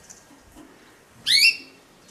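A small caged pet bird gives one short, sharp chirp of a few quick rising notes, a little past halfway through; otherwise only faint room sound.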